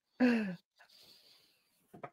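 A man's short laughing sigh, one voiced exhale falling in pitch a moment after the start, followed by faint breathing.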